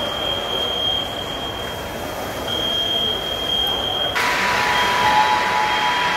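On-scene sound of a fire in an airport terminal hall: a steady rushing noise with a thin, high, steady tone that drops out and comes back. About four seconds in it cuts abruptly to a louder hiss carrying a lower steady tone.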